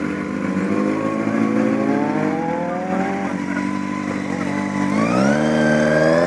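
Motorcycle engine revving. Its pitch climbs steadily, drops about two and a half seconds in, then climbs quickly again near the end.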